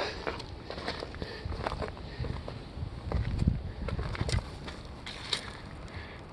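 Footsteps on dry, stony dirt, heard as scattered small crunches and clicks, with a low rumble in the middle seconds.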